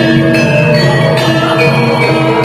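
Javanese gamelan music: bronze metallophones strike a melody of ringing notes, about two new notes a second, over a steady low undertone.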